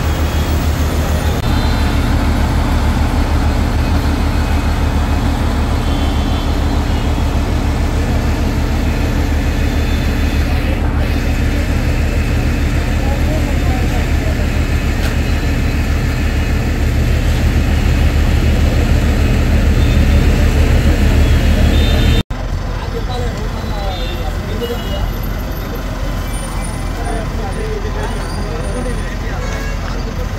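A heavy vehicle engine running steadily under indistinct voices. The sound cuts off abruptly about two-thirds of the way through and picks up again with a lighter engine hum and voices.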